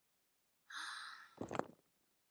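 A woman's breathy sigh, about half a second long, followed at once by a brief low grunt or knock.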